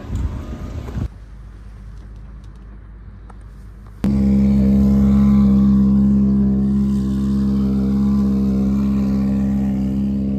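A low outdoor rumble, then about four seconds in a loud, steady engine drone cuts in abruptly and runs on without change at a constant idle.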